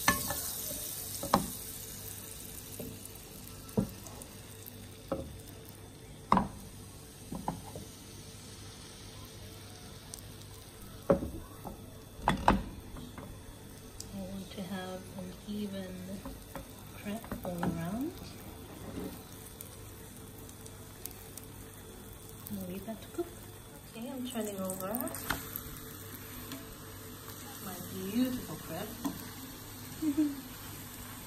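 Crepe batter and melted butter sizzling in a hot nonstick frying pan. Sharp knocks of a utensil against the pan come several times in the first half.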